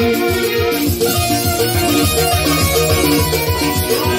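Electronic keyboard playing an instrumental passage of traditional-style folk music, a held melody line over a steady, fast drum beat, with no singing.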